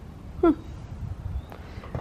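Speech only: a single short spoken "huh" about half a second in, over a low, steady background rumble.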